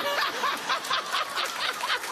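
Studio audience and talk-show host laughing, in quick repeated bursts, right after the crowd's unison "mm-hmm".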